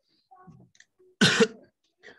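A person coughs once, a short, sharp cough a little over a second in, after a few faint sounds.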